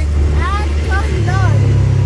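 Off-road side-by-side buggy's engine running steadily while driving, with its pitch stepping up a little over a second in as it picks up speed.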